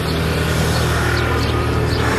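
A steady low hum with a faint, thin higher tone above it, fading near the end.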